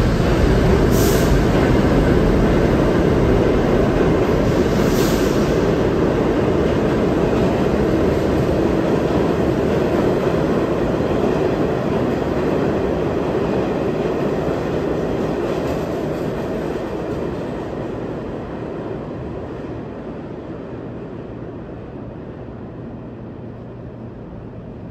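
New York City Subway A train pulling out of the station, its steel wheels rumbling on the rails and fading away as it leaves. Two brief high hisses come about one and five seconds in.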